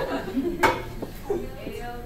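Dry-erase marker writing on a whiteboard, with a sharp tap of the marker against the board about two-thirds of a second in.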